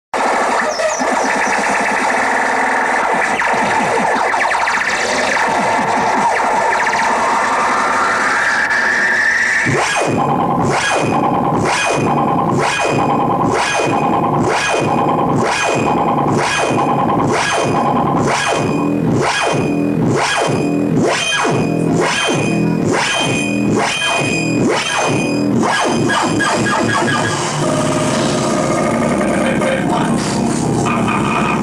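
Loud electronic music for a sound-system jingle. A noisy synthesizer build with a rising sweep runs for about ten seconds, then a steady pulsing beat comes in at a little under two beats a second, and the texture changes a few seconds before the end.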